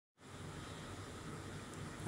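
Silence, then about a fifth of a second in, faint steady room noise with a low hum starts and runs on; no distinct event.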